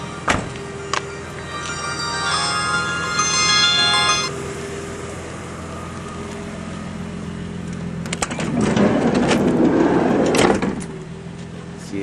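A minivan's sliding side door being opened: a rolling rumble of about two seconds near the end, with clicks as it starts and a clunk as it stops. Earlier, about two seconds in, a burst of high steady tones sounds for about two seconds over a low steady hum.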